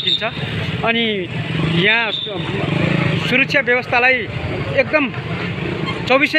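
Voices of people talking close by, over the low running of a passing vehicle engine and street noise.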